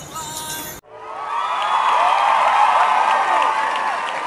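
A crowd cheering and whooping, many voices rising and falling together. It starts about a second in, right after a sudden cut.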